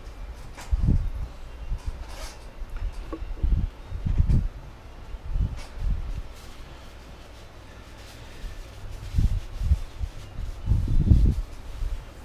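Handling noise: several short, dull, low bumps with a few faint clicks, as a plexiglass plate is set and pressed onto a cast-iron cylinder head.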